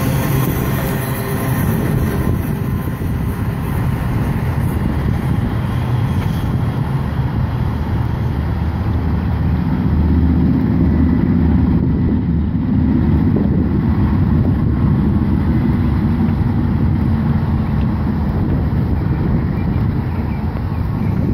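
A maintenance-of-way train's wheels rolling on the rails as its last cars go by and it draws away. The higher wheel-on-rail noise fades within the first couple of seconds, and a steady low rumble carries on under it.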